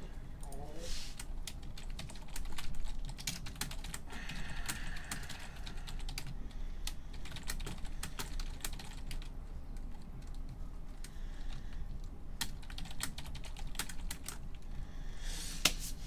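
Typing on a computer keyboard: irregular key clicks in short runs with pauses between them.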